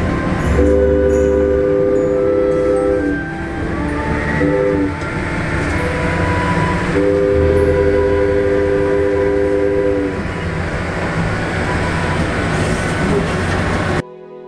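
Diesel locomotive's multi-chime air horn blowing close by: a long blast about half a second in, a short one around four and a half seconds, then another long one of about three seconds. Under it runs the steady low rumble of the moving train.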